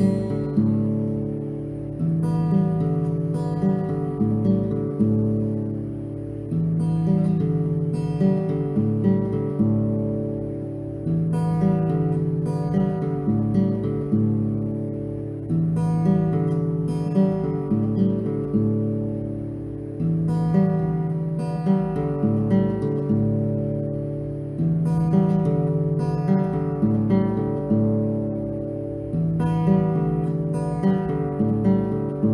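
Acoustic guitar fingerpicked in a slow, meditative instrumental written on open strings, notes left ringing over one another. The same phrase comes round again about every four to five seconds, each time starting louder and dying away.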